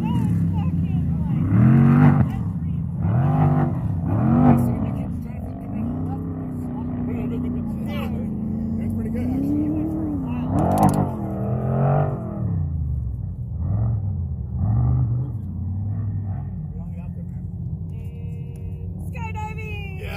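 Off-road vehicle engines revving up and falling back again and again, with one longer, climbing rev around the middle, over a steady low engine hum.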